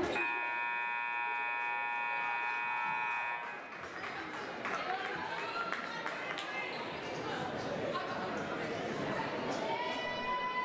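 Gymnasium scoreboard horn sounding one steady, many-toned blast of about three seconds as the game clock reaches zero, followed by crowd chatter in the gym.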